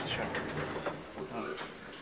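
Speech: a short spoken reply, then quieter talk over a faint steady low hum.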